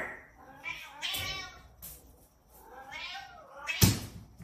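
A domestic cat meowing in two long calls that waver in pitch, followed near the end by a single sharp thump.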